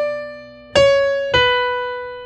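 Electronic keyboard on a piano voice playing a held B minor chord with a decorative run of single notes above it. The notes step downward: a new one is struck about three quarters of a second in and another just past a second, each fading as it rings.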